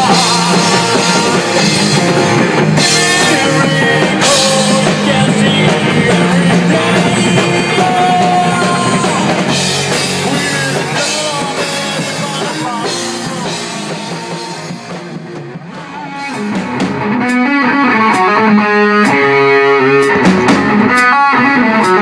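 Heavy metal band playing with electric bass guitar, guitar and drums. About three-quarters through the sound thins and dips in level, then picks up with a sparser passage of short, evenly spaced chords and drum hits.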